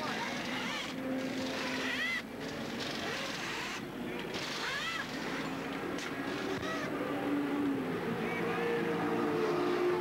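Pit-lane noise during a race-car tyre change: a car engine running steadily, its pitch shifting slowly, with indistinct voices and a few short higher-pitched glides over it.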